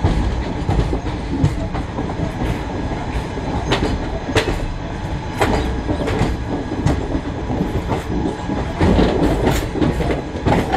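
Indian Railways express passenger coach wheels rolling over the track as the train runs out through the station yard. A steady rumble is broken by irregular sharp clacks, with a flurry of them near the end.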